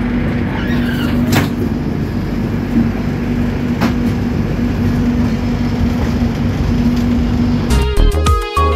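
Passenger train moving out of a station, heard from inside the coach: a steady rumble and hum with two sharp clicks a couple of seconds apart. Music cuts in at the very end.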